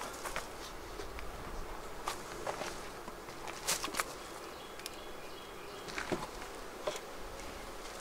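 Honeybees buzzing steadily around an open hive, with a few short knocks and clicks from wooden hive boxes being handled, the loudest about halfway through.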